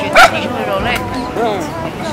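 Small dog, a Pomeranian, giving one sharp, high yap just after the start, over street chatter.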